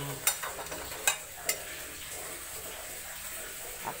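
A few sharp clinks of crockery in the first second and a half, over the steady sizzle of rice frying in a wok.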